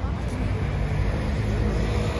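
Steady street traffic noise with people talking.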